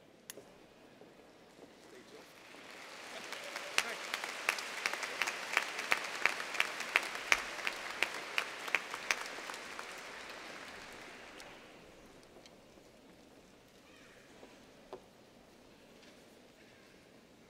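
Audience applauding, swelling up about two seconds in and dying away by about twelve seconds, with one close pair of hands clapping steadily above the crowd. A single knock near the end.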